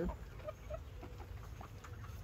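Chickens clucking softly, with two short low clucks about half a second in.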